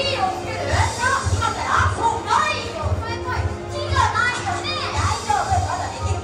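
Young children's voices calling out and shouting over a show's upbeat music, which has a steady bass beat about twice a second.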